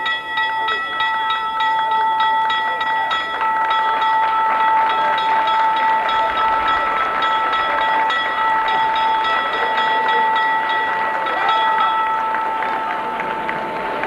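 Wall-mounted school bell rung continuously by pulling its rope, with rapid repeated strikes blending into one steady ringing that fades out near the end. A crowd claps along underneath.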